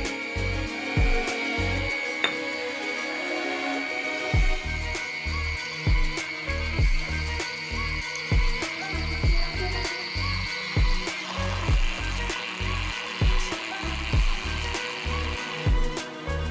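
Small DC motor of a homemade model boring machine whirring with a steady high whine, under background music with a regular bass beat. The whine gives way to a rougher, noisier sound about two-thirds of the way through.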